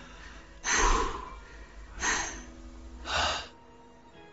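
A person breathing out heavily three times, like sighs, about a second apart. Soft sustained music notes come in faintly about halfway.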